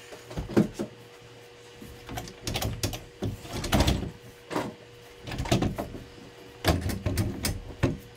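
Red plastic RotoPax fuel containers knocking and creaking against the Thule cargo-basket rails as they are pushed and flexed by hand, a series of irregular knocks.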